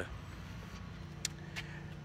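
Low steady hum of a motor vehicle, with a faint steady tone joining about a second in and one short click past the middle.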